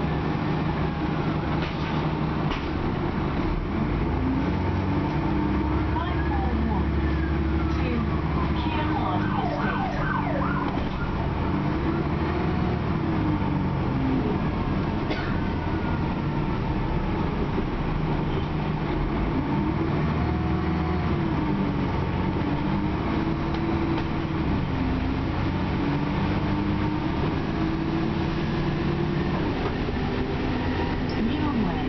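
Dennis Trident double-decker bus heard from inside the passenger saloon while driving, its engine note climbing and dropping back several times as it pulls away and changes gear. A high wailing sound rises and falls a few times between about six and eleven seconds in.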